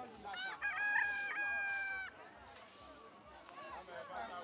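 A rooster crowing once, a long call lasting about two seconds that breaks off sharply.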